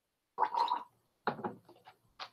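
A man's throaty gasp after swallowing a sip of neat blended Scotch whisky, about half a second in, then a run of short rasping breaths as he reacts to its burn.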